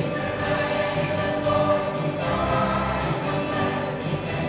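A large mixed choir singing with a live band accompanying, the chord changing a little past two seconds in.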